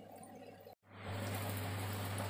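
Faint wet squishing of raw chicken pieces being mixed by hand with flour and spice paste in a steel bowl. A little under a second in, the sound drops out briefly, then a steady hiss with a low hum comes in.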